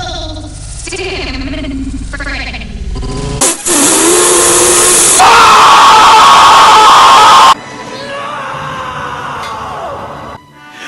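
A cartoon character's voice, chopped and looped, then a sudden, very loud, distorted scream. The scream comes in about three and a half seconds in, holds a high pitch for about four seconds and cuts off abruptly.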